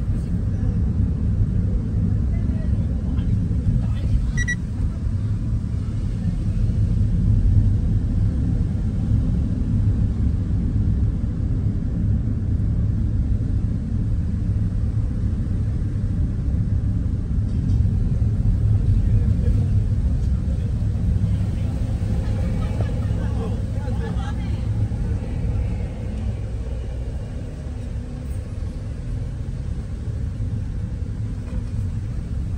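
Steady low rumble of a car driving slowly, heard from inside the cabin: engine and tyre noise on the road.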